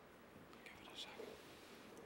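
Near silence with faint whispered speech, a few soft hissy syllables about half a second to a second in.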